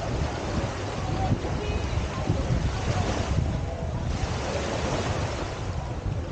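Small waves lapping and washing up on a sandy beach, with wind rumbling on the microphone; one wash swells up about three seconds in.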